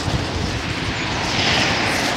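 Road traffic on the carriageway: a steady rush of road noise, with tyre hiss swelling in the second half as a vehicle comes closer.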